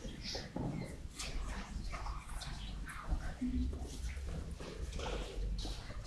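Children and congregation in a church shuffling and murmuring as a group of children moves about, with scattered brief voices and small noises.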